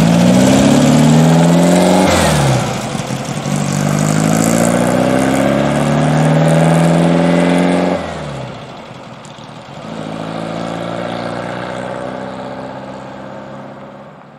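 Meyers Manx dune buggy's air-cooled Volkswagen flat-four engine accelerating through the gears. Its pitch climbs, falls with a shift about two seconds in, climbs again, then falls off about eight seconds in. After that it runs lower and quieter and fades toward the end.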